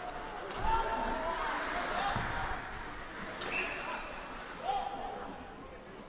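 Live ice hockey game sound in an echoing arena: players' shouts and calls, and knocks of puck and sticks against the boards. A short referee's whistle about three and a half seconds in stops play.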